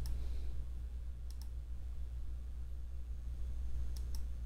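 A few short, sharp computer mouse clicks: one at the start, a quick pair about a second and a half in, and one at the end, over a steady low hum.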